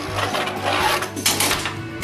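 Two Beyblade spinning tops whirring on a plastic stadium floor, with sharp clicks as they knock together, strongest about a second and a half in. One top is knocked out of the stadium, which the owner puts down to its worn tip.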